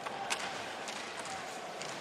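Ice hockey arena ambience: a steady crowd murmur with a few sharp clicks, the clearest about a third of a second in.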